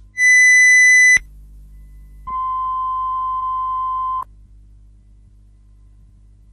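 Two steady electronic test tones on a blank stretch of archive broadcast tape: a loud high beep lasting about a second, then after a short gap a lower, softer tone held for about two seconds. A faint low mains hum runs underneath.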